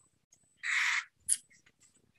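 A short puff of breathy noise about half a second in, then a brief high hiss: a person breathing close to a video-call microphone.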